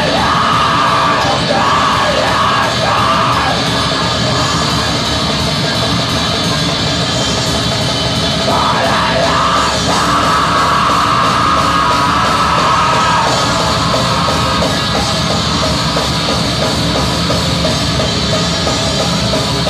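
Black metal band playing live: distorted electric guitars and drum kit, loud and unbroken, with harsh screamed vocals over the first few seconds and again from about halfway to about three-quarters of the way through.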